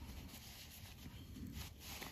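Faint rustling and rubbing of a cotton fabric tube as fingers work it right side out.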